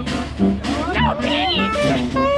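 Live Dixieland jazz band playing, trumpet and saxophone leading over the rhythm section, with sliding, bending notes around the middle.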